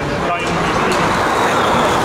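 Formula E Gen 2 electric race car driving past, its electric drivetrain making a high whine that slowly falls in pitch, over crowd chatter.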